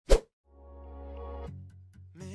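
A single sharp pop sound effect marking the answer reveal, followed about half a second in by music with a held low synth bass and sustained chord tones.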